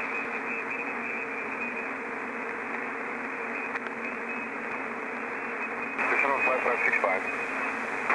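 HF radio static hissing steadily through the cockpit intercom while the pilot waits for a reply. About six seconds in, a garbled, distorted voice starts breaking through the static.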